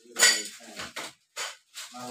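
Several short clinks and rattles of small packaged goods being handled and sorted by hand, the loudest about a quarter of a second in.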